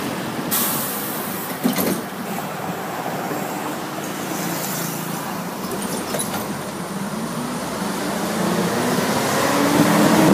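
City bus heard from inside, its engine running with steady road and traffic noise. There is a short burst of hiss about half a second in, and the engine note rises and grows louder near the end as the bus picks up speed.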